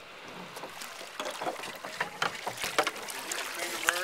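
A hooked trout being brought to the landing net beside a drift boat. Irregular splashes and knocks start about a second in and keep coming, uneven in rhythm.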